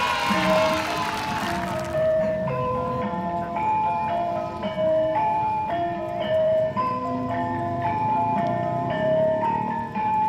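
Gamelan music: tuned metallophones ring out a melody note by note, each note changing about every half second over a lower pitched line. A wash of noise dies away in the first two seconds.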